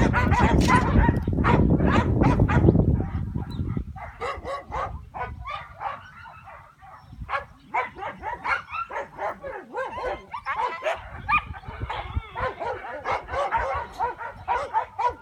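English Pointers yipping and whining excitedly in short, high, rapid calls, several a second throughout, with a loud low rumble under them for the first three or so seconds.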